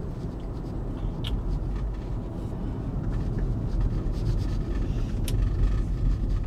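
Road and tyre noise from an electric Tesla on the move, heard inside the cabin as a steady low rumble. A couple of faint ticks come through, about a second in and near the end.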